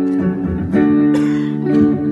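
Electric guitar played live through a looper, strumming chords that ring on, with fresh strums about three-quarters of a second in and again just over a second in.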